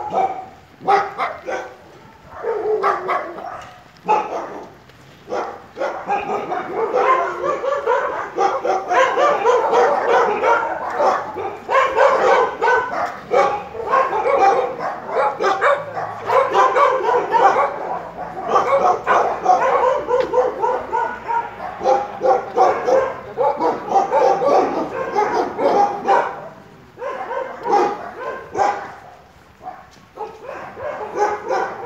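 Dogs barking loudly and repeatedly, sparse at first, then almost without a break until near the end.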